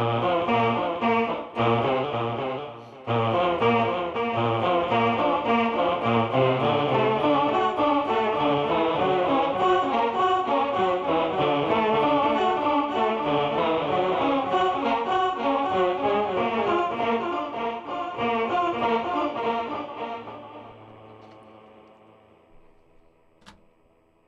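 Electric guitar played through a Line 6 HX Stomp multi-effects unit with a delay on, a dense run of fast notes with a short break about three seconds in. The playing stops around twenty seconds in and the echoes die away over the next few seconds, with a single click just before the end.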